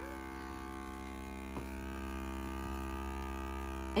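Small electric hearing-aid vacuum pump running with a steady hum while its needle-tipped wand suctions wax from a receiver-in-canal hearing aid's receiver. It gets slightly louder after about two seconds, and there is a faint tick about a second and a half in.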